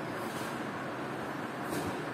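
Steady background hiss of room noise, with a faint brief rustle near the end.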